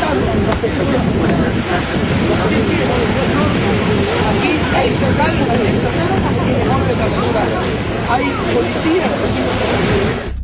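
A man's voice talking indistinctly, as on a phone call, in a covert recording from a distance, half buried under a loud steady rushing noise of wind and surf.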